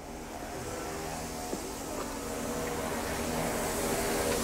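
An engine's steady drone, growing gradually louder.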